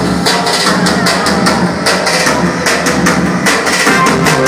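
Live Albanian folk dance music played on an electronic keyboard over a steady, fast drum beat, with no singing.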